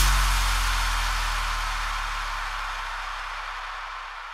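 Electronic bounce track in a breakdown: the beat drops out and a single low bass note is held under a hiss of noise, both slowly fading away.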